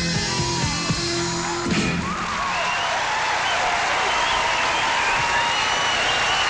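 A rockabilly band with electric guitar, saxophone, upright bass, drums and piano holds its final chord, which stops about two seconds in. Studio audience cheering and applause follows.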